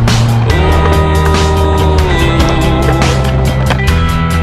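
Background music: a song with a steady drum beat and bass, with a held chord that comes in about half a second in and fades out about two seconds in.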